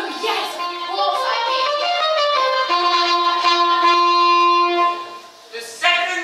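A woman singing a short phrase that ends on a long held note, which fades out about five seconds in.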